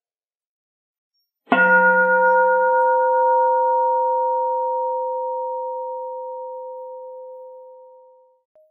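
A Buddhist bowl bell struck once with a striker about one and a half seconds in, then ringing with a clear steady tone and higher overtones that fade slowly away over about six seconds.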